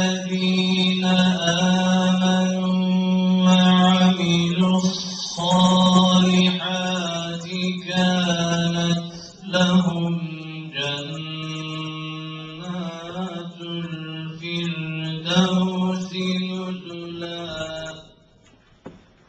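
A man's solo voice reciting the Quran in a melodic, chanted style through a microphone, holding long notes and stepping between pitches. It grows quieter over the second half and ends at the close.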